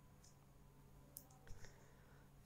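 Near silence with a few faint clicks of a computer mouse, a little over a second in, as the slide is advanced.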